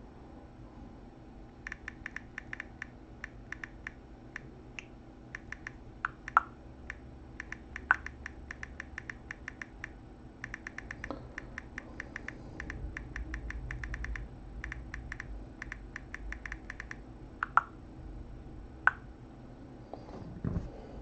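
Typing on a computer keyboard in quick runs of keystrokes with short pauses between them, starting about two seconds in. A few louder single key clicks stand out among them.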